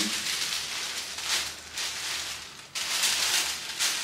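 Tissue paper and fabric rustling as a skirt is folded up with the paper over it, in several crinkly swishes.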